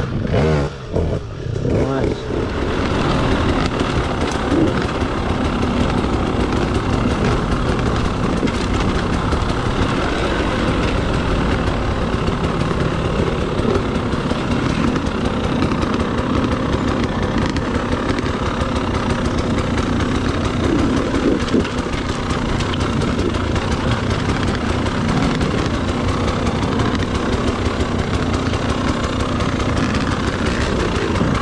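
Enduro dirt bike engine running close to an on-board camera mic, the sound thick with wind and trail noise as the bike works down a rocky trail; the level dips briefly about a second in, then stays steady.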